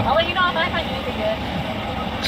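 Laughter, then soft voices over the steady low hum of a parked car idling, heard from inside the cabin.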